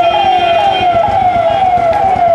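Vehicle siren sounding a fast repeating yelp, each sweep falling in pitch, about three a second.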